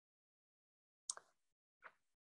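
Near silence, broken by two faint, very short sounds, one a little after a second in and one near the end.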